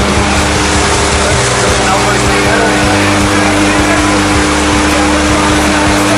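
Steady loud drone of a turboprop jump plane's engines and propellers, heard inside the cabin during the climb.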